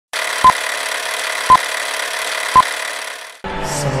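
Film countdown leader sound effect: a steady projector-style hiss with three short beeps, one a second. Near the end the hiss cuts off and a Bollywood song with a singing voice begins.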